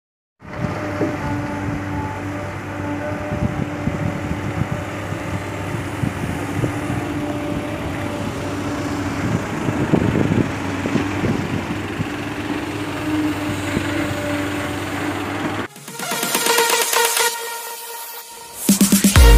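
Mitsubishi diesel dump truck, loaded with soil, with its engine running: a steady hum over a low rumble for about fifteen seconds. Near the end it cuts off and electronic dance music starts.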